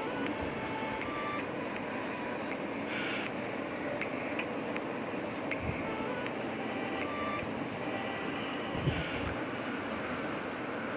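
Steady background noise, with a few faint taps and rustles of paper and a glue bottle being handled on a table.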